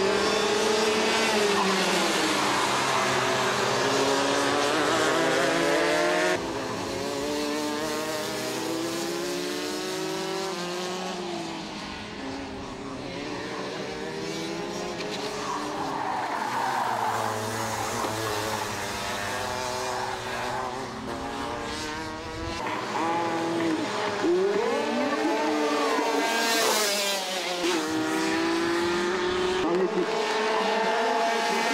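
Several racing kart engines revving up and down in pitch as the karts accelerate, lift for corners and pass by. The overall level changes abruptly twice, about a fifth of the way in and again about three-quarters in.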